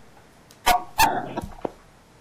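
Two short, sharp calls about a third of a second apart, from a dog or a person coughing, followed by a couple of fainter clicks.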